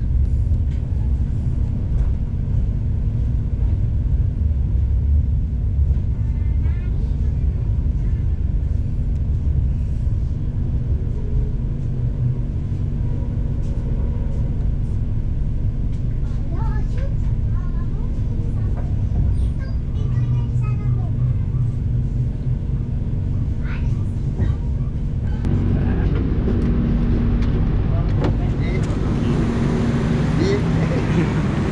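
Steady low rumble and hum of an executive-class passenger train heard from inside the carriage as it runs, with faint voices now and then. About 25 seconds in the sound changes to a more open hum.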